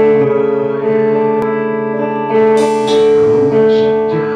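Live band playing with sustained held notes on electric guitar over a drum kit, with a cymbal crash about two and a half seconds in.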